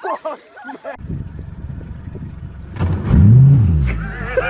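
Outboard motor running under a low rumble of wind and water, revving up and back down near the end.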